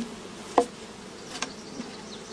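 Honeybees buzzing steadily in a mass, with a sharp knock about half a second in and a lighter click a little later.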